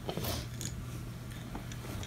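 Faint scattered clicks and light rattling of Montessori bead bars against a wooden tray as a child handles it, over a low steady hum.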